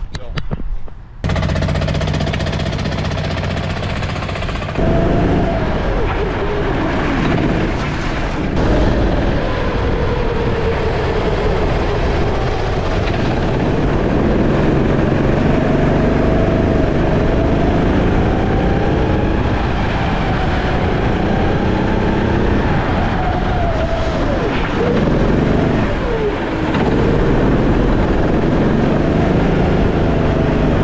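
Go-kart engine running. It starts steady at idle about a second in, then gets louder about five seconds in and keeps rising and falling in pitch as the throttle opens and closes around the track.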